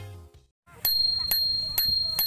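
Background music fades out, and after a moment's silence a thumb-lever bicycle bell on a handlebar rings three times, about half a second apart, each strike leaving a high ringing tone.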